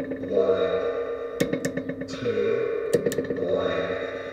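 Electronic echoes from a PT2399 delay with its feedback turned up, fed through a voice changer. Earlier test syllables come back over and over as a looping pattern of warbling pitched drones and clicky bursts, repeating about every one and a half seconds.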